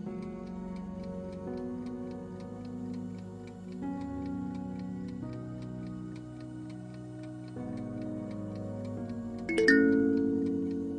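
Soft background music with an even clock ticking over it, a quiz countdown timer running. Near the end a loud, bright sound effect rings out as the answer is revealed.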